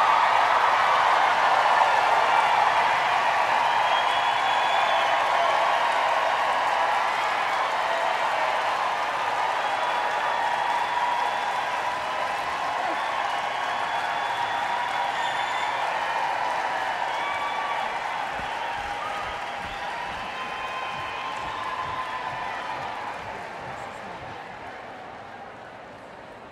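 Large audience applauding and cheering after an a cappella performance. The ovation slowly dies away and fades out near the end.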